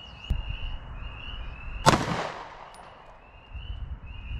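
A single 9mm pistol shot about two seconds in: one sharp crack with an echo that trails off.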